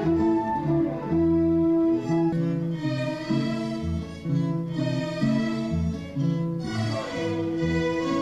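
Orchestra of violins and guitars playing together, with sustained melody notes over a changing low bass line and a falling melodic line near the end.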